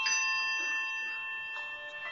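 Handbell choir ringing: a chord of several handbells struck together at the start rings on and slowly fades, and a few more bells are struck about one and a half seconds in.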